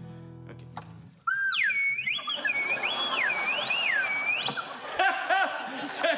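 A low guitar note rings for about a second. Then a much louder slide whistle cuts in, sliding up and down over and over, with audience noise underneath.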